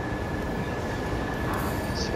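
Steady background noise of a large airport terminal hall, a dull even rush with a thin constant high tone running through it.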